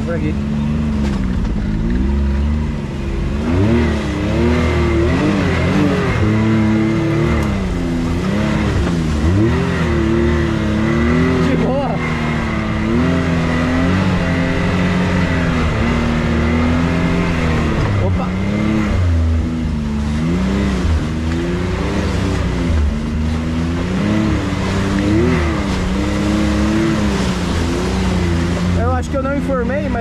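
Can-Am Maverick X3's turbocharged three-cylinder engine heard from the driver's seat, its speed rising and falling continually as the side-by-side is driven slowly along a muddy trail. A steady high whine runs along with it.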